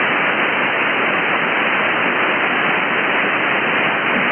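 Steady hiss of HF band static from an Elecraft K3 transceiver receiving the 40-metre band in lower sideband, heard loud in the gap between two stations' speech with no treble above the receiver's narrow voice filter.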